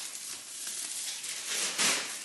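Artificial pine garland rustling as a hand pushes through and lifts its plastic needles, with a louder rustle near the end.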